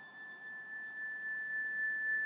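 A single high electronic tone held steady after the song's last chord, slowly growing louder. A fainter, higher tone fades out about half a second in.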